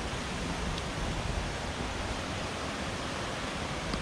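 Steady rush of river water at a confluence of two moorland rivers.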